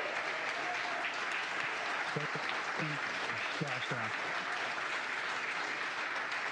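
Steady applause from a crowd greeting the Crew Dragon capsule's splashdown, with a few faint voices about two to four seconds in.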